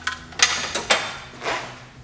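Four or five sharp metallic clinks and knocks of metal parts or tools being handled, the loudest about half a second in.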